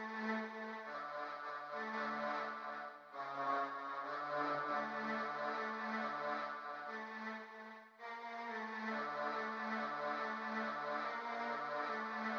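Software synthesizer from the Output Arcade plug-in playing a slow, simple melody of held notes, looping, with short breaks about three and eight seconds in as the loop restarts.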